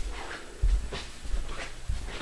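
Rhythmic panting, three short breaths in two seconds, with two dull low thumps, the louder one about half a second in.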